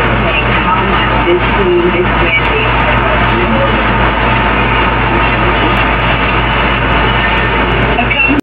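Noisy recording of television audio: a loud, steady hiss that cuts off above about 4 kHz over a constant low electrical hum, with faint muffled sounds underneath and no clear words.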